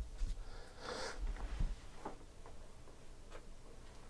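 Faint taps of trading cards being set down on stacks on a tabletop, a few single clicks spaced about half a second to a second apart, with a short noisy breath about a second in.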